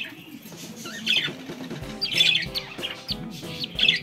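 Budgerigar chick giving a few short, high cheeps while being held and ringed. Crying like this during ringing is normal, not a sign of pain.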